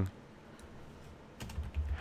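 Computer keyboard typing: a few faint keystrokes, then a quick run of key clicks in the last half-second or so.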